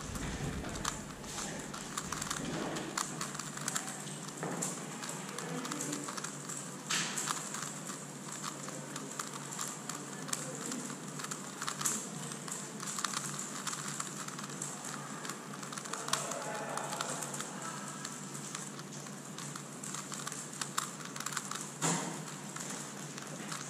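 Megaminx puzzle being turned rapidly by hand: a dense, uneven run of small plastic clicks and clacks as its faces are twisted.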